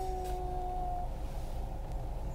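An edited-in chime sound effect: a perfectly steady held tone that cuts off about a second in, over a steady low rumble of background noise.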